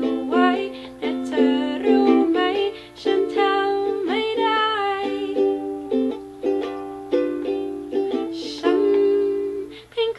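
A woman singing a Thai pop song while strumming chords on a ukulele, in a small room.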